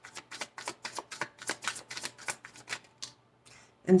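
Tarot deck being shuffled by hand: a quick run of card taps and slaps, several a second, stopping about three seconds in.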